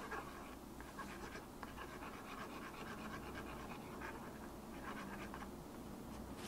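Plastic palette knife stirring heavy-body acrylic paint into glazing medium, giving faint, quick, repeated scraping strokes.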